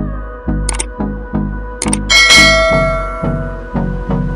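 Background pop song with a steady beat, overlaid by two short clicks and then a bright bell chime about two seconds in that rings out for about a second: the sound effects of an animated subscribe-and-notification-bell button.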